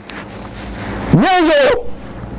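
A man's voice giving a single rising, wavering 'whoo' cry about a second in, a short hoot-like wail.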